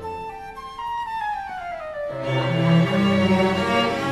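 Orchestral music with no voice: a single high instrument line steps down in pitch over about two seconds, then bowed strings come in with sustained low chords.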